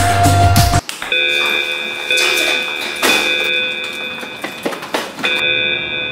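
Rock music cuts off abruptly under a second in, and an electronic alarm takes over: several high steady tones sounding together, breaking off briefly every second or two, with a few knocks over it. It is the locker's weight-sensor alarm going off.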